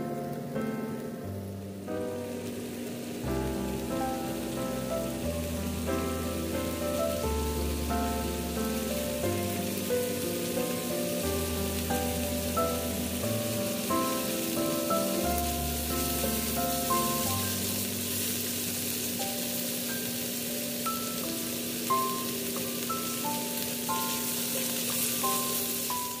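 Thinly sliced beef brisket sizzling in a frying pan, the sizzle growing louder as it goes. Background piano music plays throughout.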